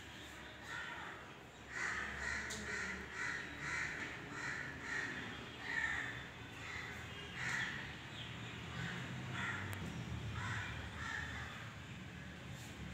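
A bird calling: a harsh call repeated in runs, about two to three calls a second, with short pauses between the runs.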